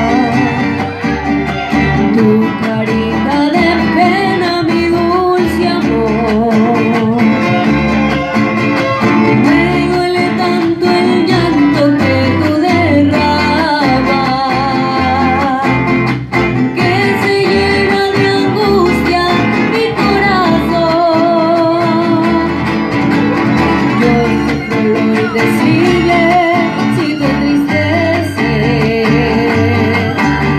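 Live mariachi band playing: a woman singing the melody over strummed vihuela and guitars, violins and a pulsing guitarrón bass line.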